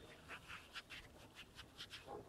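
Faint, soft rustling of a paper tissue being wiped over the skin: a few light scratchy strokes.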